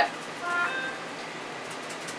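Faint, quick ticking taps of a lemon pepper seasoning shaker being shaken and tapped over a salmon fillet, the seasoning clumped inside. A brief hum-like voice sound comes about half a second in.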